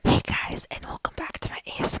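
A girl whispering close into a wired earphone's microphone held at her lips.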